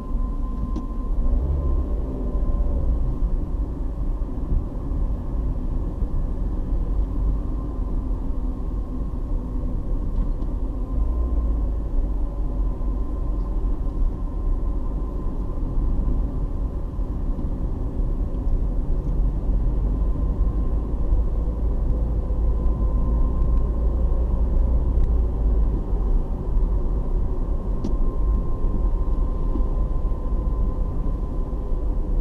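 Steady low road and engine rumble of a moving car, heard from inside the cabin, with a faint steady whine running through it.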